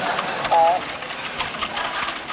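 Small humanoid soccer robots' joint motors whining in one short burst about half a second in, followed by a few light ticks as they step.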